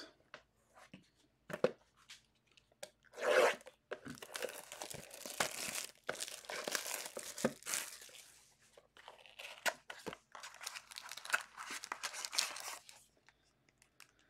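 Foil wrapper of an Obsidian Soccer trading-card pack being torn open and crinkled by hand, in irregular crackling bursts from about three seconds in until near the end, with scattered light clicks.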